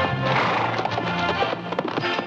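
Film-score music playing over a horse's whinny about half a second in, followed by a run of hoofbeats.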